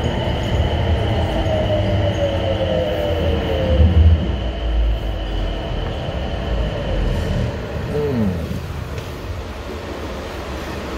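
Dulles AeroTrain people-mover car (Mitsubishi Crystal Mover) slowing into a station: a low rumble under an electric drive whine that falls in pitch. A second, quicker falling whine comes about eight seconds in as the train nears a stop.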